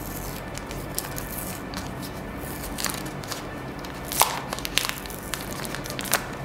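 Clear plastic protective film being peeled off a smartphone's back, crinkling and crackling a few times, loudest about four seconds in, over quiet background music.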